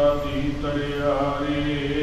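A man chanting Gurbani in slow, melodic recitation, holding long drawn-out notes that bend in pitch now and then.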